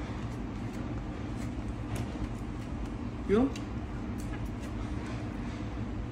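Restaurant room tone with a steady low hum, light clicks of chopsticks against food and tableware, and one short rising vocal "mm" about halfway through.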